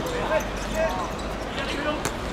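Players shouting and calling to each other during a small-sided football game, with a couple of sharp thuds of the ball on the hard court.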